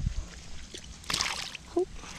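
A short splash about a second in, as a released sunfish drops into shallow pond water.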